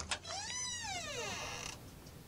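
A creaking door opening, a single squeal that rises then falls in pitch over about a second and a half and cuts off sharply, used as a sound effect for a door swinging open.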